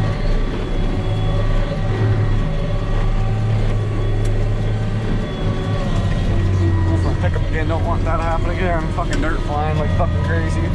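Tractor engine running steadily under load, heard from inside the cab while it pulls a baler. Its pitch drops slightly about six seconds in.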